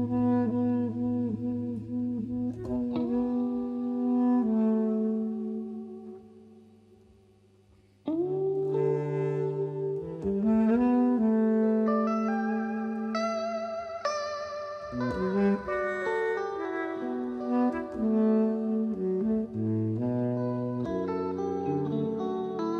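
Baritone saxophone playing long held melody notes with vibrato, with electric guitar in a live jazz band. The music fades almost away about six seconds in, and a new phrase comes in sharply about two seconds later.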